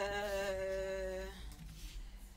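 A woman humming one steady held note for about a second and a half, which stops partway through.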